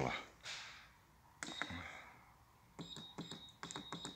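Keypad of an ERO glue-application controller being pressed: button clicks, each with a short high beep, once about a second and a half in and then several in quick succession near the end.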